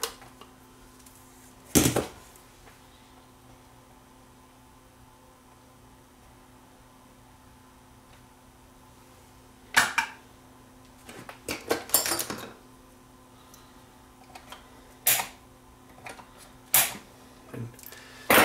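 Scattered sharp clicks and taps of small hand tools on a circuit board and workbench while a capacitor is soldered in and its leads are snipped, with a cluster of taps around the middle. A faint steady hum runs underneath.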